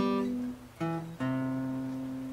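Acoustic guitar played one note at a time, three single plucked notes each lower than the last, the third held and ringing. The notes spell out a major chord shape, going back down the neck.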